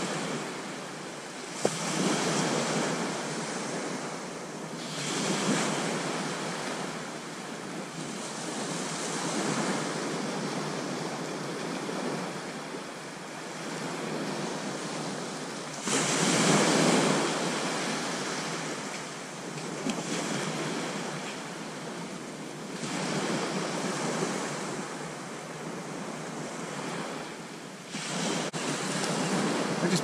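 Small waves breaking and washing up a sandy beach, surging and fading every few seconds, the loudest surge about halfway through, with wind buffeting the microphone. A single sharp click sounds under two seconds in.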